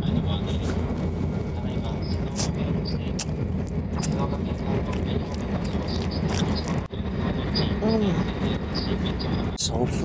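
Steady low rumble of a Shinkansen bullet-train carriage in motion, with close-miked chewing and small wet mouth clicks from someone eating a dumpling. A few brief murmured voice sounds come through, and the sound breaks off abruptly about seven seconds in and again near the end.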